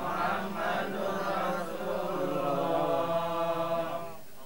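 A group of voices chanting an Islamic prayer together, several voices on drawn-out sung syllables that overlap.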